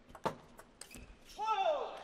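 Table tennis ball cracking off bats and the table in a fast rally, a few sharp clicks in the first second. Then a loud shout falling in pitch as the point ends.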